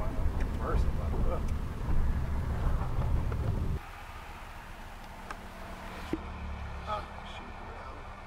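A car driving, heard from inside: loud low road rumble, then about four seconds in an abrupt drop to a quieter, steady low hum in the cabin.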